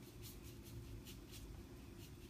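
Faint, quick strokes of a large paintbrush working thick oil paint across a metal panel, about four swishes a second.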